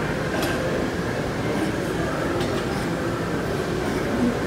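Steady gym room noise with a couple of faint metallic clinks of weights.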